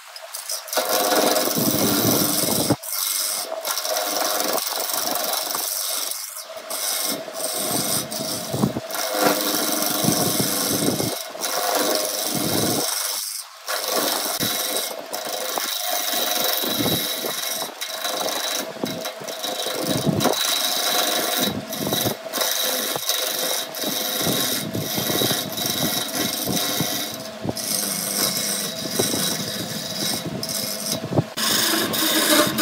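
Steel turning tool cutting into a wooden blank spinning on a wood lathe: a continuous rough scraping, broken again and again by short gaps as the tool eases off the wood, over a faint steady hum.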